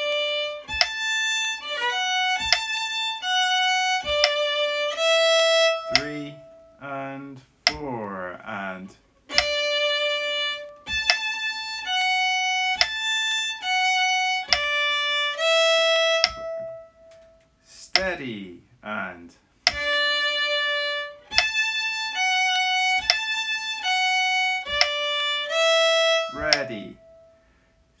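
Fiddle playing the same short phrase slowly, one held note at a time, three times over, as practice of the fingering and finger blocking.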